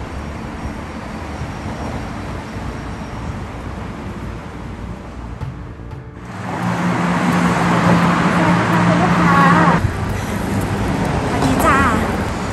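Steady background noise of road traffic. It gets louder for a few seconds after a cut about six seconds in, with a steady low hum, then drops back near the end. A woman says hello briefly a few times over it.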